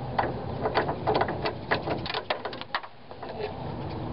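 Rubber radiator hose being twisted and tugged off the radiator neck by gloved hands: an irregular run of clicks and creaks as the hose works loose.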